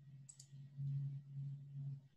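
Two quick computer-mouse clicks advancing a presentation slide, over a low steady hum.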